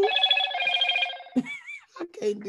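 A gospel singer's voice ending a phrase on a high note that flutters rapidly and breaks off just past the middle, followed by a brief sliding vocal 'ooh'.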